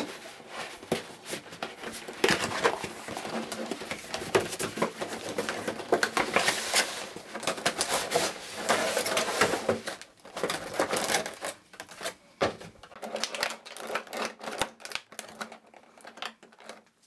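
Cardboard statue box being opened and its clear plastic clamshell tray slid out and handled: irregular scraping, sliding and clicking of cardboard and plastic. It is busiest for the first ten seconds or so and gives way to sparser clicks near the end.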